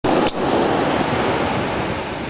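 Ocean surf breaking and washing up onto a sandy beach: a loud, steady rush of water noise.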